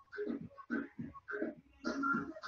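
A faint, muffled human voice in short syllable-like bursts, with no clear words.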